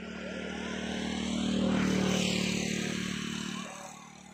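A passing engine: a steady drone that swells to its loudest about halfway through and fades away near the end.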